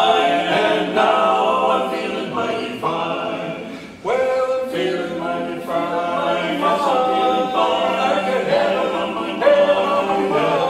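Male barbershop quartet singing a cappella in close four-part harmony, holding long chords. The sound fades down until about four seconds in, then the next phrase comes in at once.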